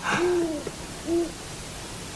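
Owl hooting: two short low hoots about a second apart, each rising and falling slightly in pitch, after a brief noisy burst at the very start.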